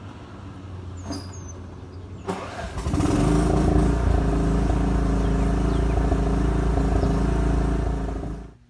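Cub Cadet riding mower engine catching between about two and three seconds in, then running loud and steady at full throttle on choke. It is the funny noise the operator said made it sound like it was going to die.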